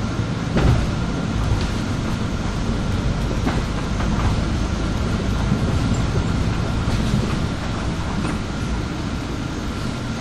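Inside a city bus under way: steady engine and road rumble, with a faint steady whine and occasional short rattles and knocks from the body and fittings, the loudest about half a second in.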